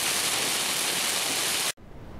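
Heavy downpour on a car's windshield and roof, heard from inside the car as a steady, dense hiss that cuts off suddenly near the end.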